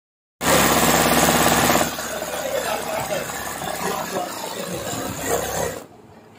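Sewing machine doing free-motion embroidery and running fast, a rapid even clatter of the needle. It is loudest for the first second and a half and then runs on more quietly with a voice over it, before stopping abruptly near the end.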